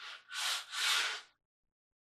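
Hand sanding of wood with sandpaper: two rasping back-and-forth strokes that stop about a second and a half in.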